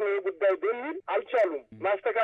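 Speech only: one voice talking steadily, reading a news report in Amharic.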